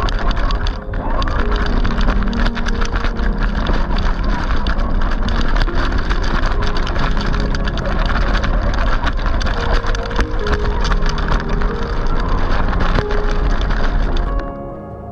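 RC scale crawler driving over loose gravel and rocks, heard from a camera mounted on the truck: a continuous dense crunching and rattling of tyres, chassis and body.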